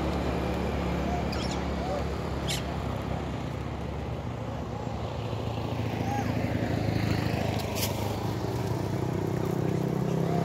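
Motorcycle engines running on the road, getting louder around seven seconds in as bikes approach, with a few short sharp clicks over the hum.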